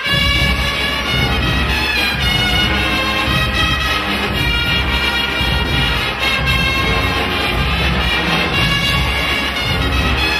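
Guggenmusik band playing live, brass and drums together with a steady beat. The full band comes in loud right at the start after a brief lull.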